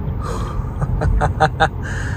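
A person giving a short breathy laugh, four or five quick bursts about a second in, over the steady low rumble of road and tyre noise inside the cabin of a moving electric car.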